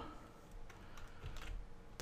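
Faint key presses on a computer keyboard, several light clicks.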